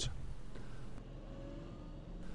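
Faint, steady low hum of a car engine running, dropping slightly about halfway through.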